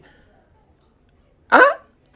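A pause of near silence, then one short spoken interjection, 'Hein?', about one and a half seconds in.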